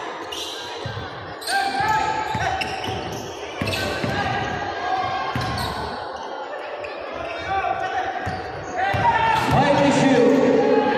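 Basketball bouncing on a hardwood gym floor in a large echoing hall, with repeated thuds as players dribble, under players' and spectators' shouts. About nine seconds in, the voices grow louder into the start of crowd cheering.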